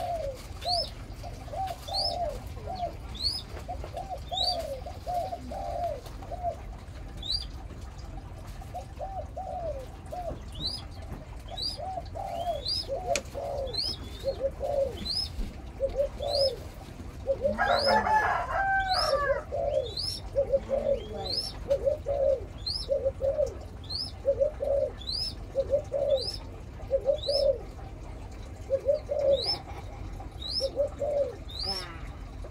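Birds calling without a break: short, high, rising chirps repeated slightly faster than once a second over lower cooing calls in short groups, with a louder cluster of calls a little past the middle.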